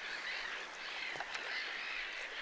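A chorus of many birds calling at once: a dense, unbroken chatter of short chirps that rise and fall, overlapping one another.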